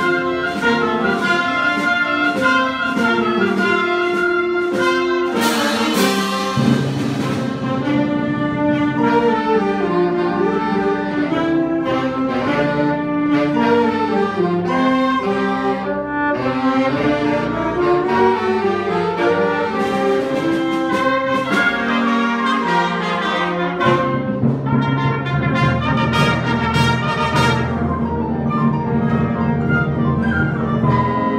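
Student band playing live, led by brass with woodwinds and a drum kit. There are cymbal crashes about six seconds in and a run of cymbal hits near the end.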